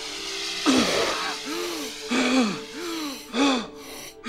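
A man gasping for air through a full-face breathing mask: about five hoarse, voiced gasps in quick succession as he draws breath after nearly suffocating.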